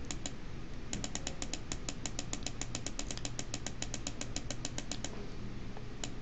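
Computer mouse button clicked twice, then clicked rapidly and evenly, about seven times a second, for some four seconds, as the scroll-down arrow of a list is pressed over and over.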